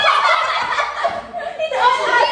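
A group of people laughing together, high-pitched cackling laughter that dips briefly a little past halfway and picks up again near the end.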